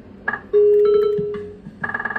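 Bar video slot machine's electronic sounds: a short reel-stop beep, then a loud steady electronic tone that fades away over about a second as a 200-point win lands, and a quick run of beeps near the end.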